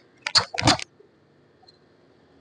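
Two quick, sharp hissing bursts about half a second apart: a karateka's forceful exhalations and gi snapping as he snaps through techniques of a karate kata.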